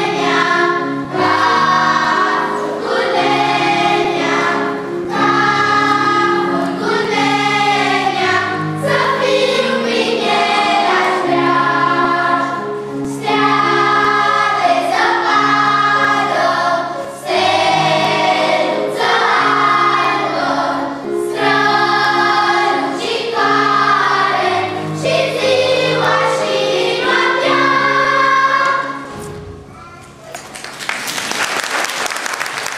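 Children's choir singing with instrumental accompaniment under the voices; the song ends just before the close.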